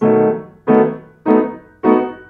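Grand piano: four blocked chords struck one after another, about one every 0.6 seconds, each ringing and dying away before the next. It is a seventh chord stepped through its inversions as a practice drill.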